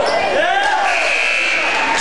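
Live basketball court sound: the ball dribbling and gym noise, then about a second in a referee's whistle sounds one steady high note for about a second, stopping play as the ball goes out of bounds.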